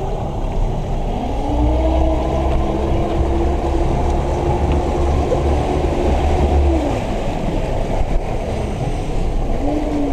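Boat's engine revving up about a second in, held at higher revs for about five seconds, then throttled back; it picks up again briefly near the end.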